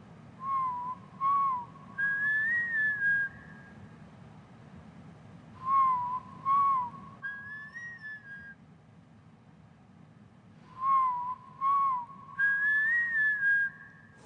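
A whistled tune: the same short phrase three times, each two quick notes followed by a longer, higher note that wavers slightly, over a faint low hum.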